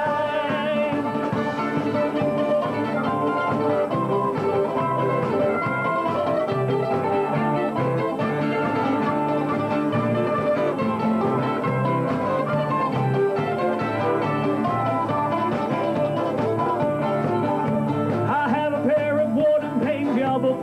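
Live acoustic folk band playing an instrumental break between verses: a fiddle carrying the melody over strummed acoustic guitar and other plucked strings.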